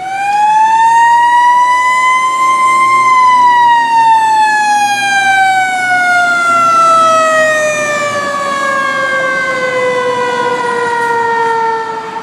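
Fire truck siren: one long tone that rises in pitch for about three seconds, then falls slowly and steadily as it winds down.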